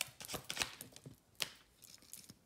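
Tarot cards being shuffled by hand: a quick run of sharp card snaps that thins out about a second in, followed by one more sharp click.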